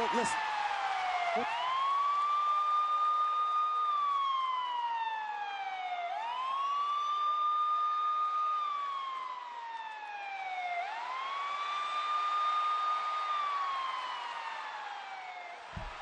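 Police siren wailing in a slow rise-and-fall cycle: each time it climbs quickly, holds its high note for a couple of seconds, then slides slowly down, about three times.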